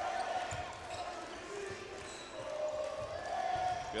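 A basketball being dribbled on a hardwood court, a few low bounces, under the steady noise of an arena crowd.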